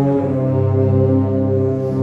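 Philharmonic wind band playing a slow funeral march: long held chords, with low brass to the fore.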